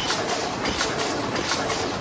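DEBAO-1250C high-speed paper box forming machine running at production speed: a steady, regular mechanical clatter from its indexing and forming stations, repeating several times a second.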